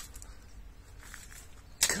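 Steady low wind rumble on the microphone with faint rustling of leaves as a long stick pokes among strawberry tree branches, then a sudden sharp knock of the stick against the branch near the end.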